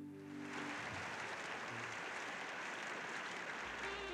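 Audience applauding as the song's last held chord dies away. A jazzy band theme starts just before the end.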